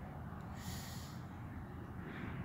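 A horse snorting once, a short hissing blow of air through the nostrils about half a second in.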